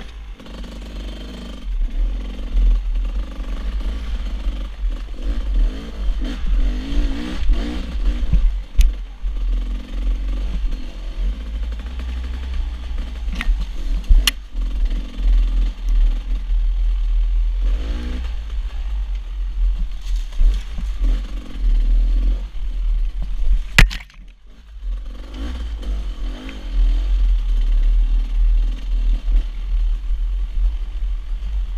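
Dirt bike engine revving up and down as it climbs a rocky trail, over a heavy low rumble and with a few sharp knocks. About three-quarters of the way through, the engine sound drops away for about a second, then picks up again.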